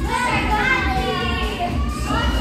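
Many young children's voices at once, calling out and chattering during group play.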